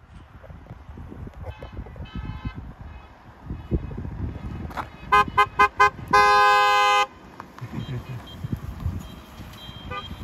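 Car horns honking from a line of arriving cars, the celebratory honking of a wedding convoy: two short toots about a second and a half in, then a quick run of five toots about five seconds in and a long blast of nearly a second, the loudest, right after.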